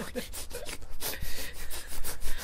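Breathy, mostly unvoiced laughter close to the microphone: a quick run of noisy breaths in and out.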